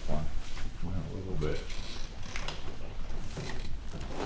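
Creaking and several sharp clicks from a padded chiropractic adjustment table as the patient's body shifts on it during a side-posture adjustment, with short low voice sounds in the first second and a half.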